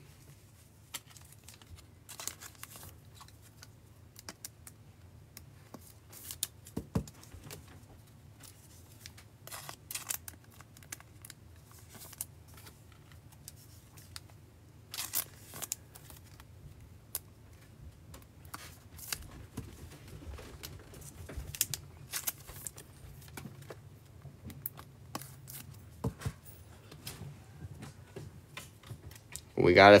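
Trading-card foil packs being torn open and cards flicked and shuffled by hand: scattered crinkles, rips and snaps of card stock, over a faint steady low hum.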